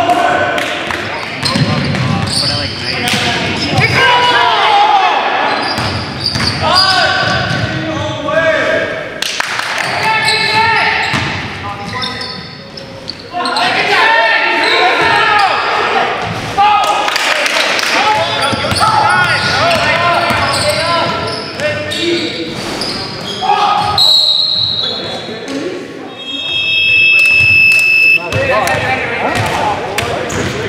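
Live sound of an indoor basketball game: the ball bouncing on the hardwood amid players' shouts and chatter, echoing in a large gym hall. Near the end a high steady tone sounds for about two seconds.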